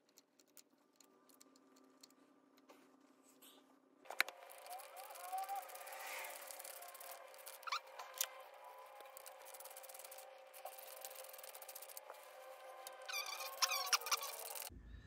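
After a few quiet seconds, a socket ratchet clicks in quick runs as it drives in the throttle body's mounting bolts.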